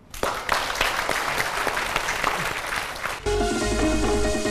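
Studio audience applauding for about three seconds, then an upbeat electronic music jingle cuts in abruptly.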